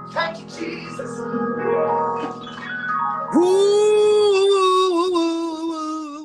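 A male gospel singer's voice running a melisma over sustained keyboard chords. About three seconds in, it scoops up into a long, loud high note that wavers and sinks slightly as it is held.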